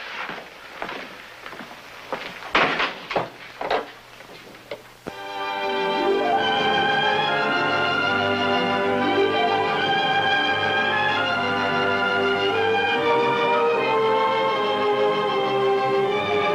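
A few scattered sharp noises, then orchestral music with bowed strings begins about five seconds in and plays on steadily as closing credits music.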